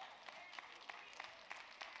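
Near silence in a large room: faint room tone with a few faint clicks.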